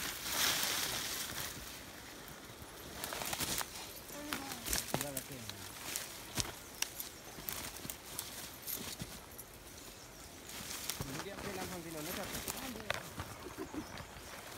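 Dry brush and grass rustling, with scattered snapping twigs and footfalls, as several people scramble up a steep overgrown slope hauling a person. Short bursts of voices come in about four seconds in and again near the end.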